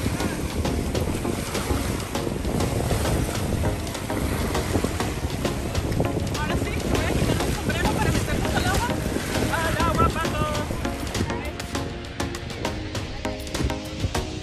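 Wind rumbling on the microphone at the seashore, over the wash of shallow sea water, with voices of people in the water around the middle.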